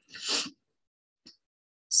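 A short, noisy breath sound from a person at a microphone, lasting under half a second near the start, followed a little over a second in by a faint small click.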